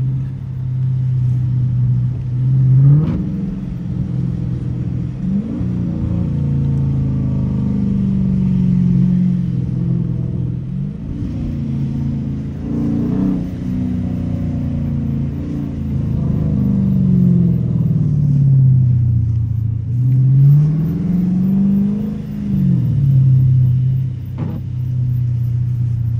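Dodge Challenger R/T's 5.7-litre HEMI V8 heard from inside the cabin while driving, its pitch holding steady and then rising and falling several times as the driver gets on and off the throttle.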